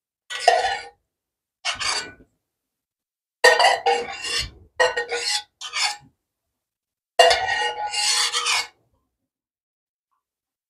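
A metal utensil scraping and rasping against a dish while cooked pumpkin is mashed. It comes in several short bursts with silence between them.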